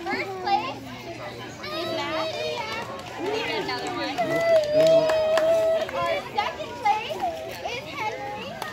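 Young children talking and calling out over one another, with one long, level call about halfway through.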